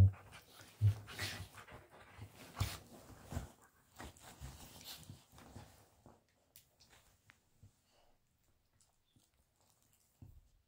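Two dogs play-fighting: a short low growl about a second in, then scuffling and breathing that die away after about six seconds into near silence as they settle.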